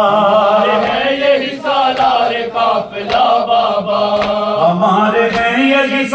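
A man chanting a drawn-out melodic line of an Urdu noha lament, with a steady low drone held beneath the voice.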